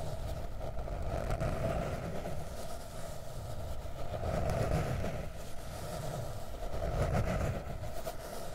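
Fingernails scratching a notebook, close-miked, in a continuous rustling scrape that swells and eases every second or two.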